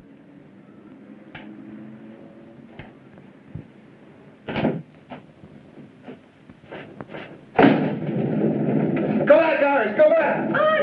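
Film soundtrack of a tense scene: scattered knocks and door sounds over a faint low hum, then a sudden loud commotion of a struggle breaking out, with shouting voices near the end.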